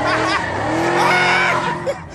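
Car doing donuts: the engine runs hard under a wavering, gliding squeal from the spinning tyres, and the sound falls away just before the end.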